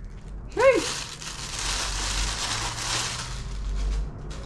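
Clear plastic bag crinkling as a camera lens is worked out of it: a steady rustle of about three seconds that starts just after a short spoken word.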